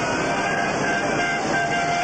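Steady horn-like tones over a loud, even wash of noise.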